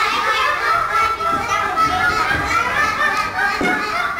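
Many young children's voices together, loud and overlapping, without a break.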